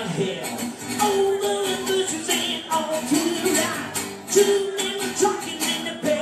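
Live band playing a song, with a steady percussion beat under held melody notes.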